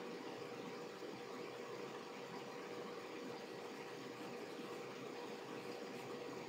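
Steady background hiss with a faint constant hum, the noise floor of a voice-over microphone, with no other sound.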